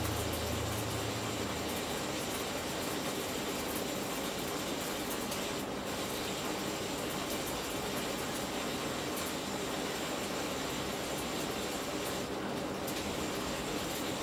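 High-voltage arcing across an LG plasma display panel's glass, fed about 2 kV from stacked microwave oven transformers, making a steady hiss. A low hum fades out in the first second or two, and the hiss thins briefly twice.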